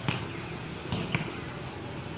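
A few short, dull knocks, one at the start and two close together about a second in, over faint background voices.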